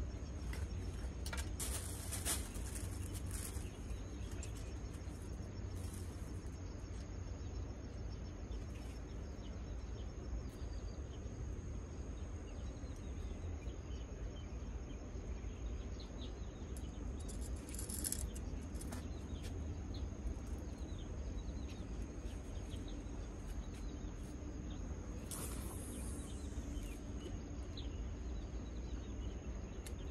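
Outdoor ambience: a steady low rumble with a thin, steady high tone over it, broken by three short bursts of high hiss, near the start, about halfway and a little before the end.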